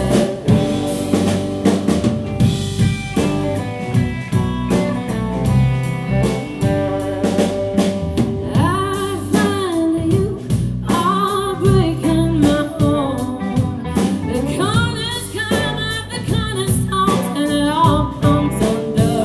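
A live band playing with drum kit and bass, with an electric guitar lead; from about halfway the lead notes bend and waver.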